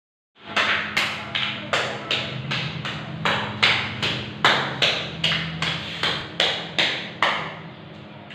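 An even run of sharp percussive hits, about two and a half a second, each dying away quickly, over a low steady hum.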